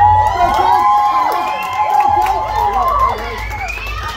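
A group of children cheering and yelling together in long, high-pitched shouts, easing off a little near the end, over a steady low rumble.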